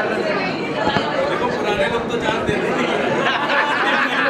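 Chatter of several voices talking over one another, steady and fairly loud.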